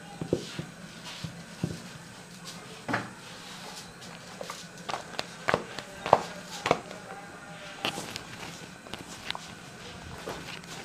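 Irregular taps, slaps and soft knocks of a thin puran poli dough sheet being worked over an upturned clay pot, first rolled with a rolling pin and then stretched and patted by hand. The sharpest knocks come in a cluster a little past the middle.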